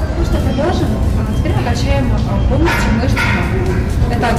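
A woman speaking Russian over background music with a steady low bass.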